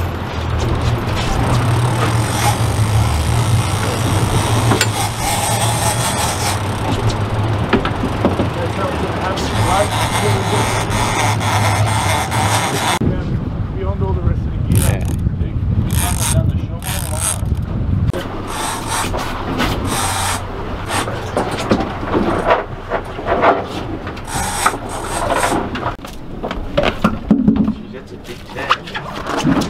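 Boat motor running steadily under wind and sea noise while line is wound in on a big-game reel. About halfway through the steady hum drops away, and irregular knocks, clicks and rubbing of handling take over.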